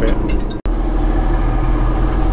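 Semi-truck engine and road noise heard from inside the cab: a steady drone with a low hum. It drops out for an instant about half a second in, at an edit cut, then runs on.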